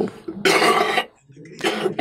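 A man coughs once, a single sharp burst about half a second long, at about the loudness of his speech.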